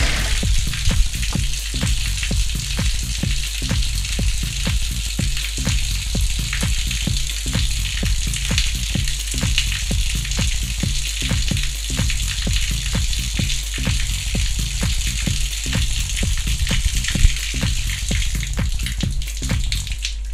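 Water running out of a hose onto a concrete floor and splashing, a steady dense spatter.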